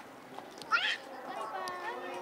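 A short, high-pitched cry about a second in, rising and then falling, with people talking.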